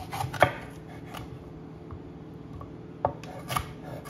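A santoku knife slicing a red bell pepper on an end-grain wooden cutting board: a few irregular knife taps on the board, the loudest about half a second in, then two more near the end.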